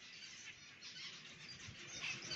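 Faint chirps of English zebra finches in an aviary, heard over low background noise.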